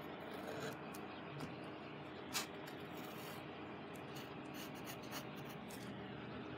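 Faint rubbing and scratching of paper sheets being handled and shifted on a desk, with scattered light clicks; the sharpest click comes a little over two seconds in.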